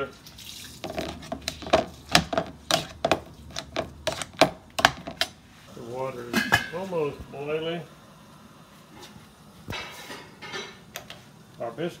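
Hand potato masher knocking against a stainless steel pot while mashing boiled potatoes, a quick run of sharp knocks at about three a second for four seconds or so.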